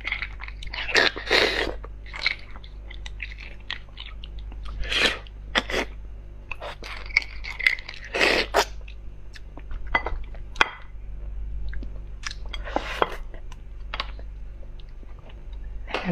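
Close-miked eating sounds of soft beef bone marrow: wet sucking and chewing as the marrow is drawn off a wooden skewer and out of the bone, in irregular bursts. The louder bursts come about a second in, and at about five, eight and thirteen seconds.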